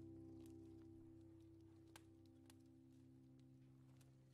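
A very quiet piano chord slowly dying away at the end of a piece, muffled as if from another room, with a few faint crackles from a fire.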